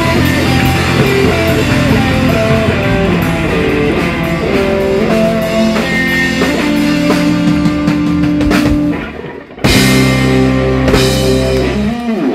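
Live rock band with electric guitar, bass guitar and drums playing the closing bars of a song; about nine seconds in the sound drops out briefly, then the band hits a loud final chord together and lets it ring out near the end.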